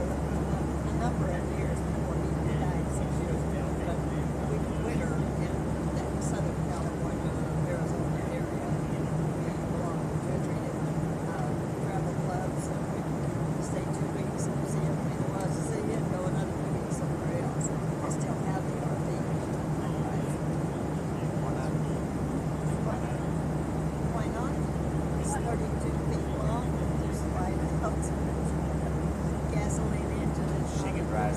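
Steady drone of an airliner cabin in flight: a constant low engine hum and air rush, with muffled, indistinct conversation underneath.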